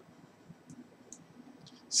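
A quiet pause with a few faint, short clicks, about three of them spread through the middle of it.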